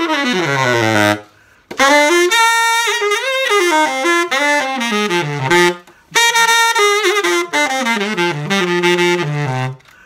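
A 29,000-series Selmer Balanced Action tenor saxophone played in melodic phrases. It opens with a run falling to the bottom of the horn, then two longer phrases with short breaks between. The horn is on its old original pads with no resonators, not yet overhauled.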